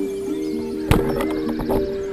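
Background music, with one sharp snap about a second in: a Saber 65 wooden band-powered speargun firing underwater as its rubber bands are released.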